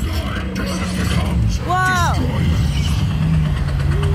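Dark-ride effects soundtrack playing loud: a heavy low rumble, with a short pitched vocal cry that falls away about two seconds in.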